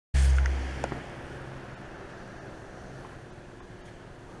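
Handling noise from a handheld camera being moved around: a loud low rumble with a low hum at the start that fades within about a second, a sharp click, then a faint steady hum and room noise.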